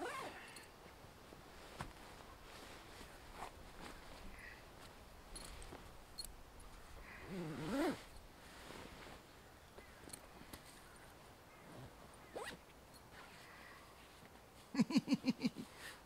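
A synthetic Czech Army winter sleeping bag rustling as a man climbs into it, and its long diagonal YKK zip being drawn closed. There is a short pitched vocal sound about halfway through, and a run of louder short vocal sounds near the end.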